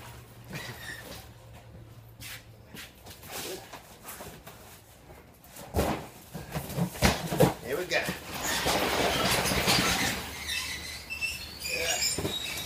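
Cardboard boxes being handled: a few sharp knocks as boxes are picked up and set down from about six seconds in, then a couple of seconds of scraping as cardboard slides against cardboard.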